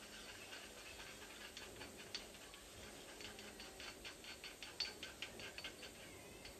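Faint, quick irregular ticking and scraping of a small utensil against a ceramic cup as half a tablet is mashed with water into a paste, the ticks coming several a second in the second half.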